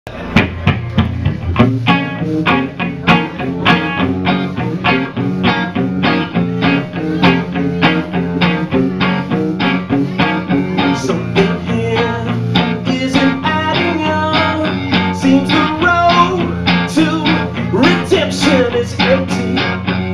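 Live rock band playing a song's instrumental opening: two electric guitars over drums keeping a steady beat of about four hits a second.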